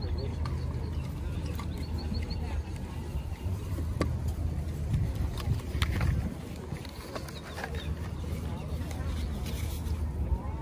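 Indistinct background chatter of a busy outdoor market crowd over a steady low rumble, with a few sharp clicks about four and six seconds in.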